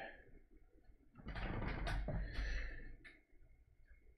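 A paintbrush working oil paint, a scratchy rasping run of strokes lasting about two seconds from a little over a second in.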